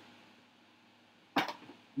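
Quiet room tone, then a single sharp click or knock about one and a half seconds in, followed by a couple of faint small ticks.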